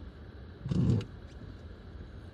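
The handbrake lever of a 2017 Skoda Rapid Spaceback being pulled on, making a bit of a noise for about a third of a second, roughly three quarters of a second in. A low steady hum from the stationary car's cabin runs underneath.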